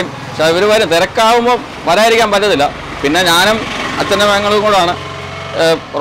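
Speech: a person talking in bursts, over a steady low hum.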